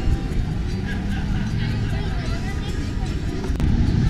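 Indistinct background voices over a steady low rumble, with a single sharp click about three and a half seconds in.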